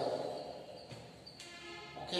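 A man's voice trails off into a short pause. A faint, held pitched tone sounds in the second half before talking resumes.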